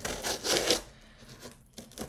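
Scissors cutting open a shipping package: one rasping cut through the packaging in about the first second, then quieter handling.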